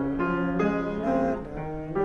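Grand piano playing a run of chords, a new chord struck about every half second and each left to ring.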